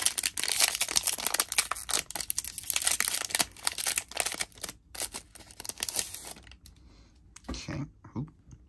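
A foil trading-card pack from the 2022 Zenith Football set being torn open and crinkled by hand. The foil crackles densely for about six seconds, with a short break near five seconds, and then stops.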